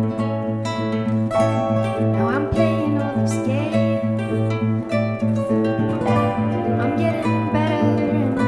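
Instrumental passage of a live acoustic song: plucked guitar notes ringing over a steady low held note.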